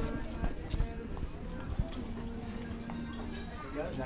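Background chatter of diners, with footsteps knocking on a hard floor as people walk.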